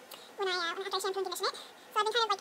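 A woman's voice talking in a high pitch, in short phrases; the words are not made out.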